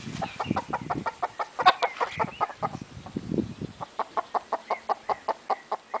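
A chicken clucking in a steady run of short calls, about four a second, as it settles in to roost in a conifer. Low rustling under the first half.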